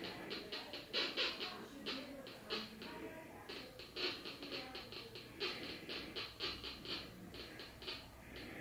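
Home-built Minipulse Plus pulse induction metal detector giving short, faint, high-pitched blips, several a second, as a ring on a hand is swept past its search coil at about 30 cm. The response is weak, at the edge of its detection range.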